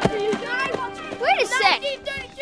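Children's voices shouting and yelling excitedly, with the loudest rising-and-falling yell a little past halfway.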